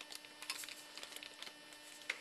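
Faint steady electrical hum with scattered small clicks and ticks.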